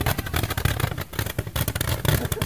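Roman candles firing rapidly from two tubes strapped to a person's arms, a dense, unbroken run of pops and crackles over a low rumble.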